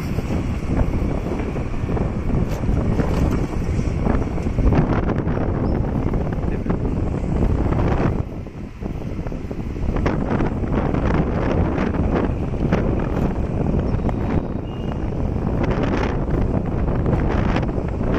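Wind buffeting the microphone of a phone filming from a moving vehicle, a continuous low rumble with road noise underneath; it eases for about a second halfway through.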